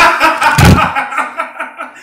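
A group of people laughing and crying out in disgust at a taste, loudest in the first second, with a heavy thump a little over half a second in.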